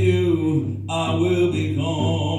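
A man singing an Indigenous hand-drum song, holding long notes, with a short break a little before one second in.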